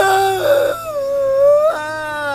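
A person's long, drawn-out wailing cry of anguish, held on one wavering pitch with a brief upward swoop near the end.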